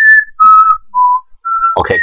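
A person whistling a short tune of five clear notes that step up and down, as mock waiting music while listeners fetch a pen and paper.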